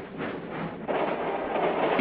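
Freight train running on the rails, a steady rushing rail noise that swells louder about a second in.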